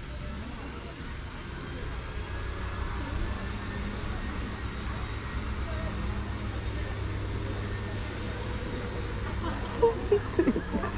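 Low, steady motor rumble of a small utility cart approaching, getting a little louder over the first few seconds and then holding steady.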